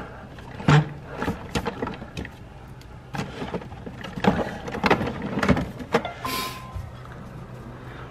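A Narwal robot mop being slid back into its base station: a string of clicks and knocks over a low steady hum, with a short beep about six seconds in.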